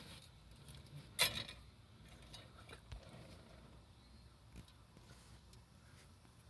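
Small handling sounds while working on the motorcycle: one sharp, hard clink a little over a second in that rings briefly, then a few faint clicks.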